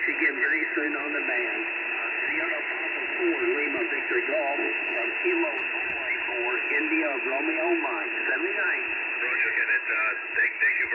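Single-sideband voice from an amateur station on the 20-metre band, received on an Icom IC-705. The speech is narrow and thin like a telephone, cut off below about 200 Hz and above about 2.7 kHz, over a steady hiss of band noise.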